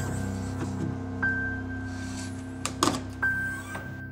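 Soft background piano music with sustained notes, a high note coming in about a second in and again near the end. A few short clicks or knocks sound about three-quarters of the way through.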